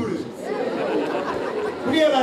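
A crowd of many people talking and calling out at once, a dense chatter of overlapping voices.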